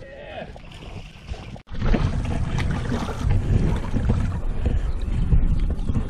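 Wind rumbling on the microphone, loud from about two seconds in, with scattered knocks and splashes as a largemouth bass is landed in a net beside the boat.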